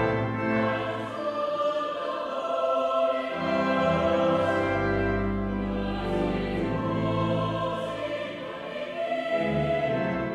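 Cathedral choir of boys and men singing a sustained choral passage, with a deep held organ pedal note under the voices through the middle.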